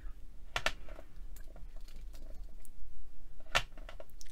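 A long clay blade chopping through strips of polymer clay, its edge striking a glass work mat in a few sharp clicks, the loudest about half a second in and again near the end, with fainter ticks between.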